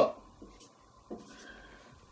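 Marker scratching on a whiteboard in a few faint short strokes as a small circle is hatched in.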